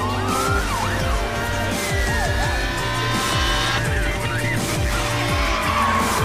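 Car engines revving and tyres squealing in a movie-style sound mix, over music with a repeating heavy bass pulse.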